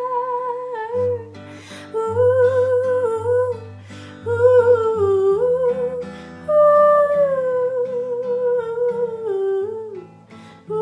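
A young woman sings a wordless, hummed melody in long held notes over an acoustic guitar, whose low notes come in about a second in.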